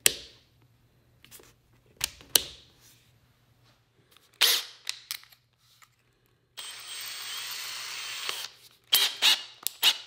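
Makita 18-volt cordless hammer drill: a few sharp clicks as its mode ring is turned to the hammer setting. Then the motor runs steadily for about two seconds while the chuck is held to close it on a masonry bit, followed by a quick cluster of clicks and rattles near the end.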